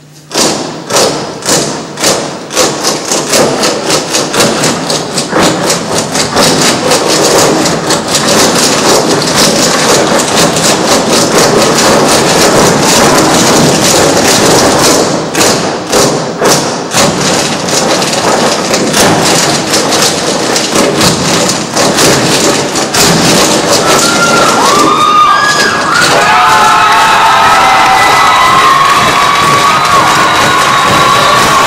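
Theatre audience bursting into loud applause right as the music ends, dense clapping with cheering, and high whoops and shouts rising over it in the last few seconds.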